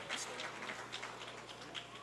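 Faint indoor pool ambience: water splashing and lapping, with distant voices.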